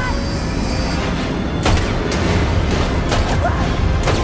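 Action-film soundtrack: music over a steady low rumble. A loud boom comes about 1.7 s in, followed by several sharper impacts.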